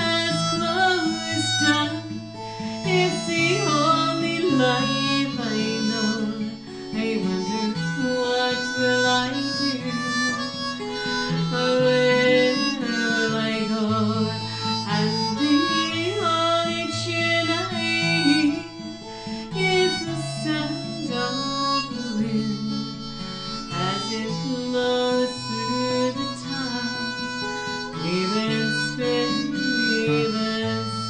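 Instrumental break of a folk song: a harmonica plays the melody over acoustic guitar accompaniment.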